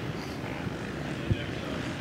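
Motocross dirt bike engines running out on the track, heard as a steady, blended drone from a distance, with one soft knock a little past halfway.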